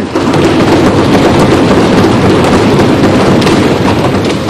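Loud, dense applause from members of parliament, easing slightly near the end.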